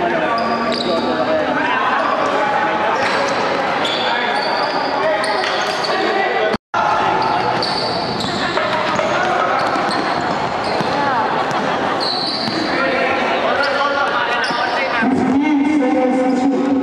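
Pickup basketball game in a gym: a basketball bouncing on the court and players calling out over one another. The sound drops out completely for a moment about six and a half seconds in.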